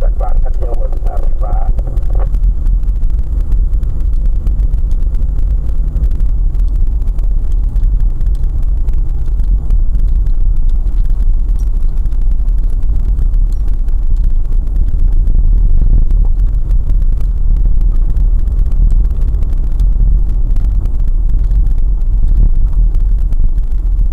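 Steady low rumble of a car driving along a rough, dusty road, heard from inside the cabin through a dashcam microphone. A voice is heard briefly at the start.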